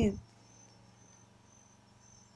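Faint high-pitched cricket trilling in short, broken stretches, audible once the voice stops.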